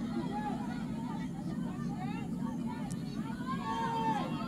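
Footballers shouting and calling to each other on the pitch in short rising-and-falling cries, over a steady low background rumble.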